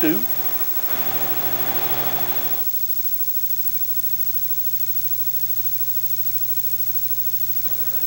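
A louder, noisy stretch of sound for the first two and a half seconds cuts off suddenly. After it comes a steady low electrical hum with evenly spaced overtones.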